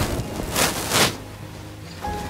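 Two brief swishes of a long faux fur coat being pulled on and settled over the shoulders, about half a second and about a second in.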